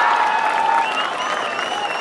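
Crowd of spectators cheering and clapping in reaction to a penalty kick just taken, with shrill calls rising above the noise; it swells just before and eases off slightly over the two seconds.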